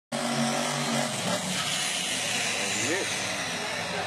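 A car engine running, under a steady wash of noise, with voices mixed in.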